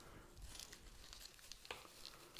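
Faint rustling and crinkling of sheet moss being pressed and squidged by hand around a small bromeliad's root ball, with a small click late on.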